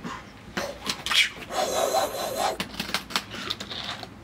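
A metal-edged flight case being opened by hand: a few clicks and knocks, then about a second of rubbing and scraping as the lid and its contents are handled, with lighter handling noise after that.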